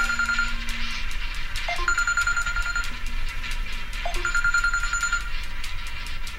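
Smartphone ringing with an incoming call: a trilled, bell-like ring in bursts about a second long, repeating every two and a half seconds or so.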